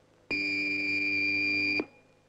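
Electric fencing scoring apparatus sounding its buzzer once: a steady electronic beep lasting about a second and a half that starts and stops abruptly, the signal that a touch has registered.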